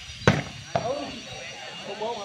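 A volleyball spiked hard at the net: one sharp, loud smack about a third of a second in, then a second, softer hit about half a second later. Spectators' voices chatter throughout.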